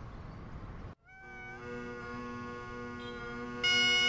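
Bagpipes striking in: after a faint moment of room sound and a short cut, the drones start as a steady chord with a note sliding up to pitch. Just before the end the chanter comes in louder on a higher melody note.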